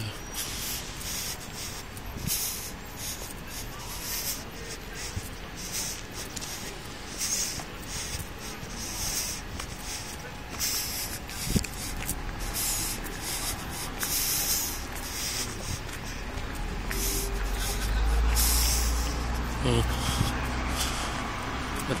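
Outdoor ambience picked up on a phone microphone while walking: repeated bursts of hiss, faint voices of people nearby, and a low rumble a few seconds before the end.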